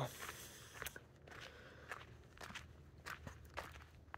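Faint footsteps of a person walking, soft steps coming at an uneven pace.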